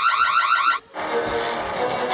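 Electronic warbling alarm, about seven rising sweeps a second, cutting off abruptly just under a second in. After a brief gap, background music starts.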